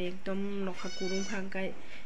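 A woman's voice talking in an even, sing-song pitch, with one long drawn-out vowel about a second in.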